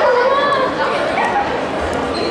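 High-pitched voices shouting and calling out in a large sports hall during a handball game, over a steady background of crowd chatter.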